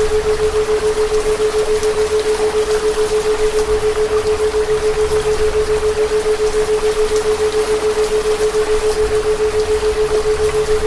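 A steady pure tone at about 432 Hz, pulsing evenly several times a second as a theta binaural beat, over the steady hiss of falling rain.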